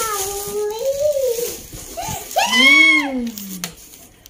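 Wordless voice sounds: a young child's drawn-out, high-pitched vocalising, then, about two and a half seconds in, a louder long exclamation that rises and then falls away in pitch.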